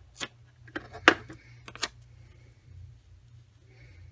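An ATG tape gun clicking and rasping as it runs adhesive tape onto the back of a paper image: about five sharp clicks in the first two seconds, the loudest a little after one second. After that there is only faint paper handling.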